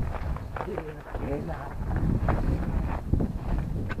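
Indistinct talking, with a low rumble of wind on the microphone.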